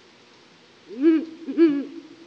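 Ural owl hoots played back from a portable loudspeaker to provoke territorial males. There are two short hoots about half a second apart, starting about a second in, each rising and then falling in pitch.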